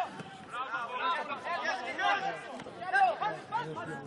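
Several people's raised voices calling and chattering over one another at a football match, loudest about three seconds in.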